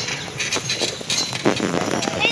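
Hooves of a carriage horse clip-clopping on the street, several irregular knocks a second, with a louder knock about one and a half seconds in.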